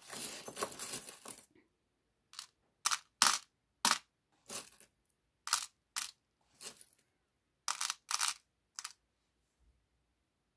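Small metal charms rattling and clinking as a hand rummages through them: a dense jumbled rattle for the first second and a half, then about a dozen short, separate clinks over the next several seconds.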